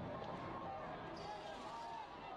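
Faint, indistinct voices under a noisy background, slowly fading, with a band of high hiss coming in about a second in.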